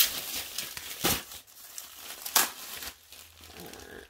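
Plastic packaging crinkling as it is handled, with three sharper crackles: one at the start, one about a second in and one about two and a half seconds in.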